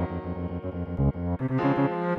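Instrumental music: a cello melody in quick repeated notes over keyboard chords, with the accompaniment changing about one and a half seconds in.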